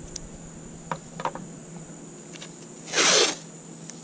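A length of yellow fine line masking tape ripped off its roll in one quick pull about three seconds in, with a few light handling clicks before it.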